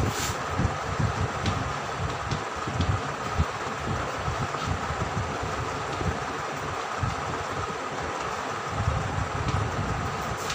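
Steady mechanical hum and low rumble of room noise, with a few faint taps and scrapes of chalk on a blackboard as words are written.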